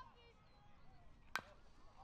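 Youth baseball bat striking a pitched ball: a single sharp ping with a brief ring, about a second and a half in.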